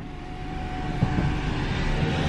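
Car power window motor running: a steady whine over a rushing noise that slowly grows louder as the glass moves.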